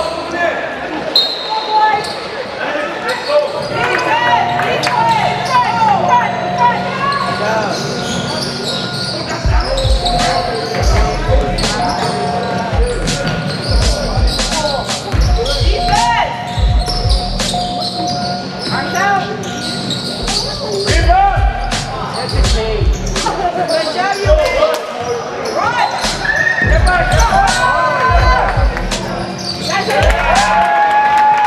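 Basketball game play on a hardwood gym floor: the ball bouncing in repeated low thumps, steadily from about ten seconds in, sneakers squeaking in short chirps, and players calling out, all echoing in the gym.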